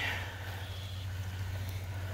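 Quiet outdoor background with a steady low hum and no distinct events.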